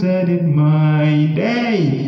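A man chanting a poem without accompaniment, holding long steady notes, then sweeping up and back down in pitch near the end.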